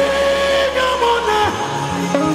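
Live amplified music: a male singer holds one long note into a microphone, sliding up into it and down out of it. A bass line underneath stops about one and a half seconds in.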